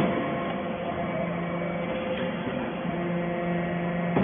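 TCM hydraulic briquetting press for cast-iron chips running with a steady hum from its hydraulic power unit. The tones shift slightly in the second half, and there is a faint click about two seconds in.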